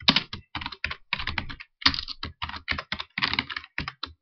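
Computer keyboard typing: a quick, uneven run of keystrokes, several a second, as code is entered.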